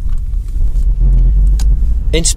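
A loud, deep rumble that swells about a second in.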